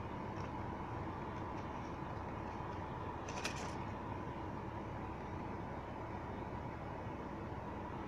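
A brief papery rustle about three and a half seconds in as the fuse chart is pulled from the BMW E46's glove-box fuse panel, over a steady low hum inside the car.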